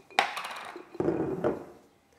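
A glass jar of dry, crisp navette biscuits being handled on a table: a sharp knock just after the start, then clattering, and a second knock with more clatter about a second in.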